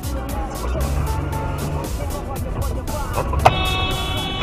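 Car pulling away from a stop, its engine and road noise a low rumble under background music with a steady beat. About three and a half seconds in, a loud steady high tone cuts in and holds for about a second.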